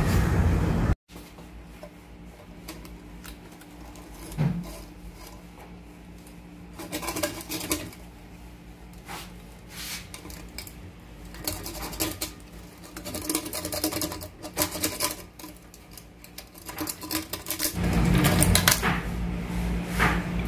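Scattered light clicks and scrapes of a plastic strip and a metal pop-up stopper in a bathroom sink drain, as the strip is worked down the drain to snag hair. A louder steady low rumble comes in about two seconds before the end.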